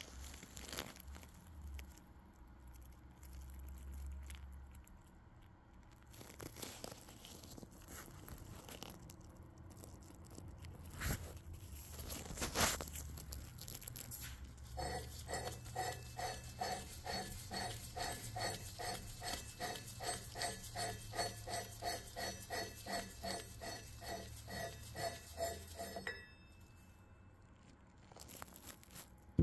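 Threaded metal nose plug being unscrewed from a 155 mm practice projectile's fuze well: the threads grind and squeak in a quick regular pulse, about three a second, starting about halfway through and stopping suddenly shortly before the end. Before that, quieter handling noises with a couple of sharp clicks.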